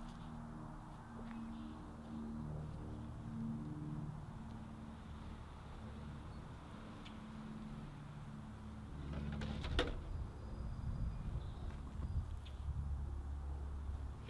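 Wind buffeting a camera microphone: a low rumble that grows stronger in the last third, with a faint low hum coming and going beneath it and a brief knock or rustle about two-thirds through.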